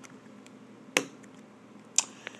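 Two sharp plastic clicks about a second apart as a white snap cap is handled and pressed onto a 12 dram plastic vial.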